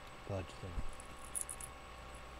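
A man's voice saying a single word, then a few faint, high clicks about a second and a half in, over a low steady hum.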